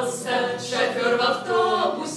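A small group of men's and women's voices singing a song together.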